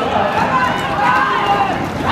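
Roller skate wheels rolling on a rink floor as a pack of roller derby skaters comes around the track. Over them, overlapping shouts and talk from skaters and onlookers go on without a break.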